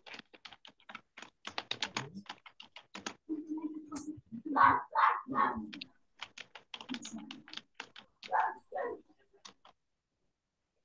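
Rapid key clicks of a computer keyboard being typed on, coming through a video call. A dog barks a few times around the middle and twice more near the end, louder than the typing.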